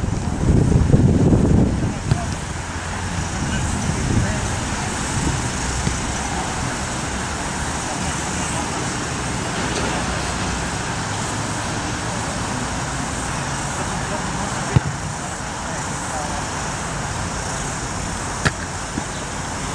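Steady outdoor noise of road traffic with faint indistinct voices, louder and rumbling in the first two seconds. A single sharp click about fifteen seconds in.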